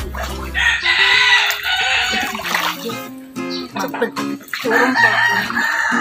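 A rooster crowing twice, each crow about two seconds long: the first starts about half a second in and the second near the end. Music plays underneath.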